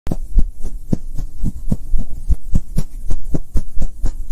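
Logo-animation sound effect: rapid, slightly irregular low thumps, about four or five a second, over a steady low hum.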